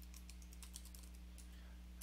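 Faint, quick keystrokes on a computer keyboard typing a command, over a low steady electrical hum.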